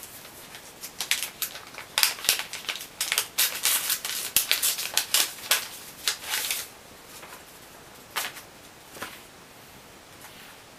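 Paper envelope being torn open by hand: a quick run of sharp rips and paper rustles for several seconds, then a few scattered crinkles as the card is handled.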